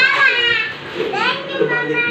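High-pitched voices of young children chattering at play, with a short rising cry about a second in.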